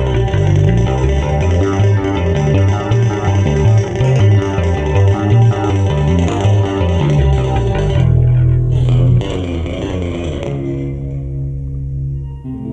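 Electric guitar and Chapman Stick playing a busy instrumental passage over a quick-moving bass line. About nine seconds in, the playing drops back to a few long sustained notes.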